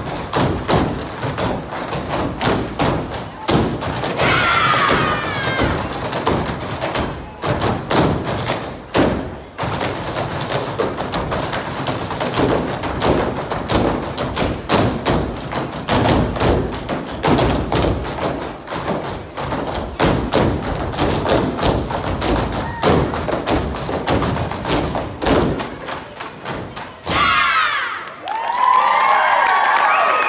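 Jump ropes slapping a stage floor and feet landing, a fast, uneven run of thumps and taps. A brief burst of crowd cheering comes about four seconds in, and loud cheering and screaming takes over near the end.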